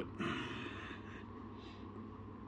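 A man's soft breath out, lasting about a second and starting just after the start, over a steady low hum.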